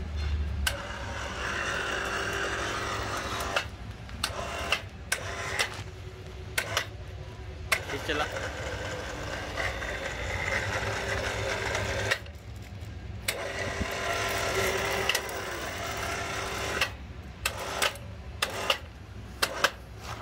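Single-phase electric winch running in several runs of a few seconds each, its motor and wire-rope drum going steadily. It stops briefly between runs and starts again, with sharp clicks in the last few seconds.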